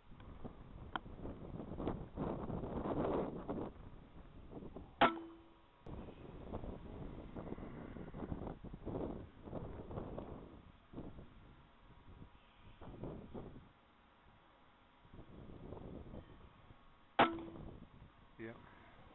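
Wind buffeting the microphone in gusts, with two sharp rifle shots, one about five seconds in and one near the end, each followed by a brief ringing tone.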